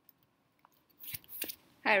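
Near silence, then about a second in a few short clicks and rustles close to a microphone, followed by a voice starting to speak.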